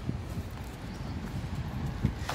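Footsteps of someone walking on a paved path, heard as irregular low knocks over a low rumble at the handheld microphone.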